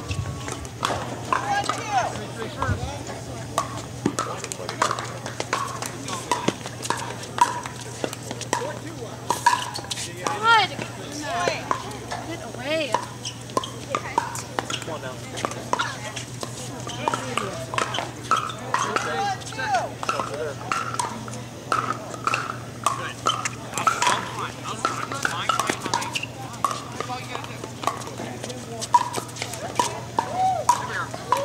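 Irregular hollow pops of pickleball paddles striking plastic balls on the surrounding courts, overlapping one another, over indistinct chatter of players and spectators and a low steady hum.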